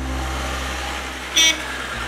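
Steady outdoor noise with a single short, high vehicle-horn beep about one and a half seconds in.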